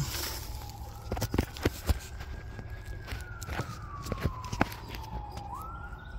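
Several sharp knocks of small wooden blocks being set and shifted on a cinder block and plank floor. Behind them a faint siren wails, rising and falling slowly.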